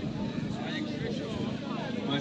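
Spectators chatting in the background, several overlapping voices with no single speaker standing out.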